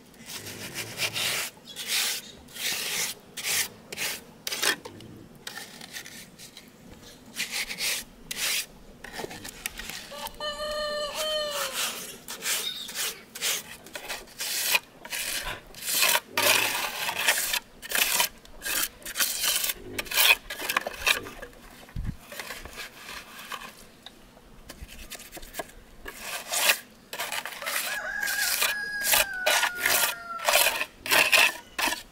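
Steel trowel scraping and spreading wet sand-cement mortar in repeated strokes while plastering a trough mould. A rooster crows about ten seconds in.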